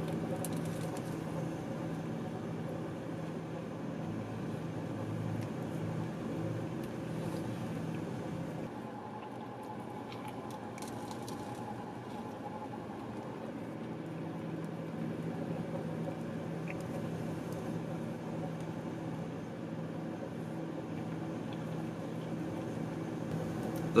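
A person quietly chewing a mouthful of a breakfast sandwich (soft roll, egg and bacon) under a steady low hum inside a car's cabin. The hum eases off for a few seconds about nine seconds in, then returns.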